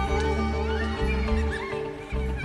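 Live rock band and chamber orchestra playing a slow passage: sustained deep bass notes and held chords under short, high, wavering lines that bend up and down. The sound drops briefly at the very end.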